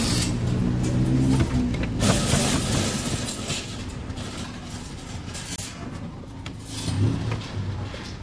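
Close street traffic: a car engine runs loudly for the first two seconds and then fades, with another engine swelling briefly near the end. Soft slaps of roti dough on the steel cart top come through underneath.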